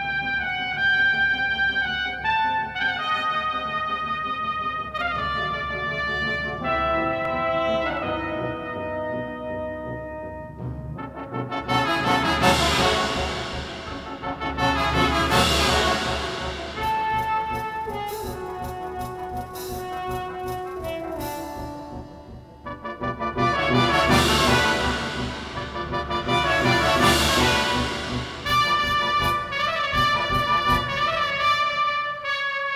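Brass quintet of trumpets, trombone and tuba playing a classical piece in a very reverberant hall. Held notes move in steps for the first ten seconds or so. Then come two loud, full passages, about a third of the way in and again past the two-thirds mark.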